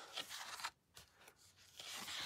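Faint rustle and crinkle of sheets of patterned cardstock paper being turned over in a paper pad, with a quiet gap in the middle.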